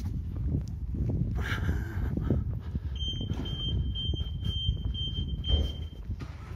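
A low, steady rumble of outdoor street ambience, and from about three seconds in a thin, high, pulsing electronic beep tone that lasts nearly three seconds.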